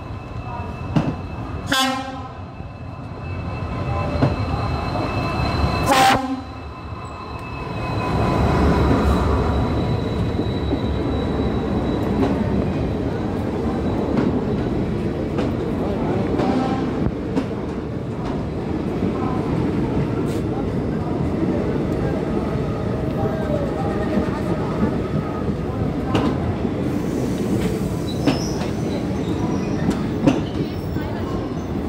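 A passenger train hauled by a WDP4D diesel locomotive arrives. The horn gives two short blasts, about two and six seconds in. The locomotive passes with a loud surge of engine noise about eight seconds in, and then comes the steady rumble and clatter of the coaches rolling past over the rail joints.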